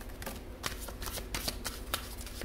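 A Cosmic Tarot deck being shuffled by hand: an irregular run of light, sharp card clicks and flicks.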